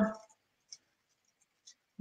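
Hands fixing a toothpick into a rolled jicama wrap: near quiet with two faint, short ticks about a second apart, after a woman's word trails off at the start.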